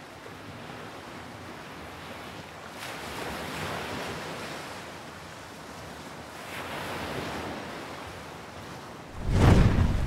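Soft rushing whooshes of noise that swell and fade twice, like surf. About nine seconds in comes a sudden, loud, deep boom: the sound-effect hit of an animated logo intro.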